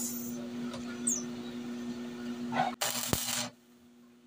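Steady electrical hum of an arc-welding machine, then, after a sudden break, a short burst of hiss from the welding arc lasting under a second that cuts off abruptly.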